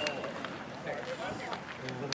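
Indistinct chatter of a group of baseball players talking over one another in a huddle, no single voice standing out.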